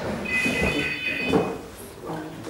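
A high, steady squeal lasting about a second, over low voices.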